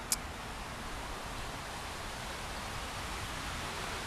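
Steady, even hiss of a breeze moving through trees and grass, with one short click just after the start.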